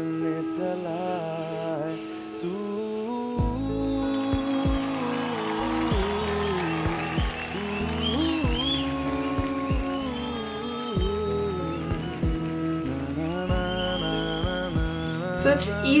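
A Bollywood song performed live: a male singer with acoustic guitar, with a low bass accompaniment coming in about three seconds in.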